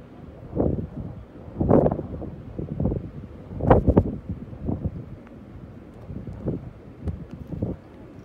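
Wind buffeting the microphone in irregular gusts, the strongest about two and four seconds in.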